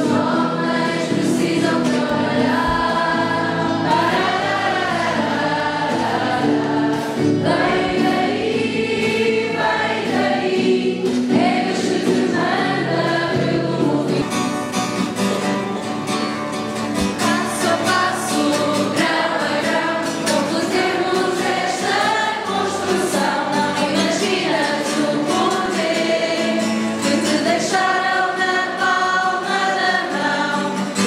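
A group of young people singing a religious song together, accompanied by strummed acoustic guitars.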